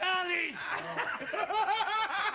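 Men laughing mockingly, ending in a run of short, rhythmic 'ha' pulses in the second half.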